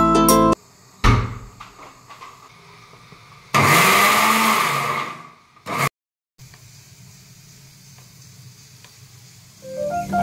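A thunk, then an electric mixer grinder blending spinach into a purée: the motor runs for about a second and a half, its pitch rising and then falling as it spins up and down, followed by a short second pulse.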